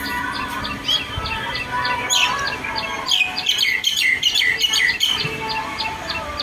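Birds chirping: a run of loud, quick chirps that drop in pitch from about two seconds in to about five seconds in, over a steady high ticking at about five a second.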